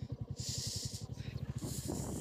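Motorcycle engine running at low speed, heard faintly as a steady, rapid putter, with a soft hiss that comes and goes.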